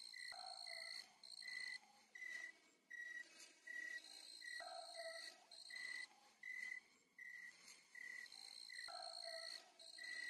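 Faint night-time cricket chirping, a short high chirp repeating steadily about twice a second, with a higher trill coming and going behind it.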